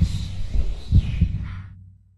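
Heartbeat sound effect: low double thumps, one pair about every second, over a low hum. It fades out near the end.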